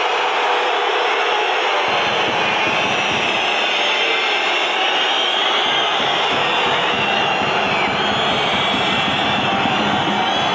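Large football crowd in a stadium stand: a steady, loud wall of massed supporters' voices with no single voice standing out.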